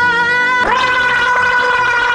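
A woman gargling water after brushing her teeth, holding one long pitched note that slides up into place a little under a second in, over background music.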